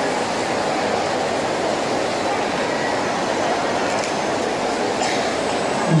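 Steady, even background noise of a large crowded hall, with no clear voice or distinct event standing out.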